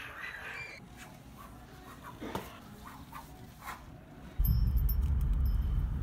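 Faint room sound with a few light clicks and one brief squawk-like call, then an abrupt cut about four and a half seconds in to the loud, steady low rumble of a car's cabin with the engine running.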